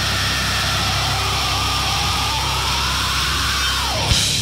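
A heavily distorted nu-metal guitar and bass chord held and ringing with no drums, under a noisy high whine that sinks slowly in pitch and then drops sharply at the very end.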